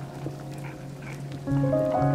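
Electronic ambient music of layered, sustained tones. About a second and a half in, a louder set of held notes comes in on top.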